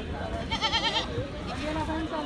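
A goat bleats once, a short quavering call about half a second in, over the chatter of a crowd.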